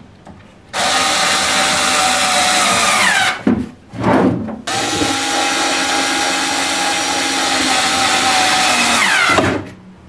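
Power drill-driver running in two long steady bursts with a short burst between them, each long run ending with the motor's pitch falling as it winds down. It is driving screws from inside a pine drawer front, fitting the drawer knobs.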